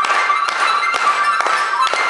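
Live band music: a harmonica played into a microphone carries a held, high lead line over a drum kit keeping a steady beat of about two hits a second.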